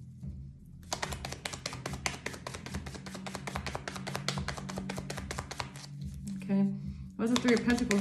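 Tarot deck being shuffled hand to hand: a rapid run of crisp card clicks, stopping briefly just after the start and again shortly before the end.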